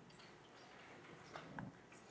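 Near silence: room tone, with a few faint keyboard clicks about a second and a half in.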